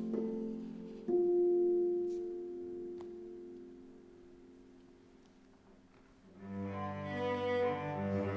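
A concert harp's last plucked note, struck about a second in, rings and slowly fades away. About six seconds in, a cello starts bowing low notes.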